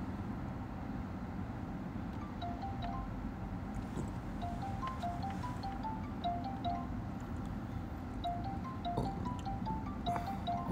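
An outgoing phone call ringing out on a smartphone speaker, waiting to be answered. It plays a repeating little tune of short high beeps that steps up and down, starting a couple of seconds in.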